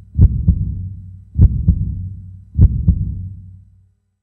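Heartbeat sound effect: three slow double thumps (lub-dub), one pair about every 1.2 seconds, each trailed by a low fading hum, dying away near the end.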